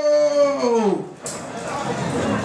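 A man's voice holding one long drawn-out note that slides down in pitch and breaks off about a second in, followed by a mix of crowd and music noise.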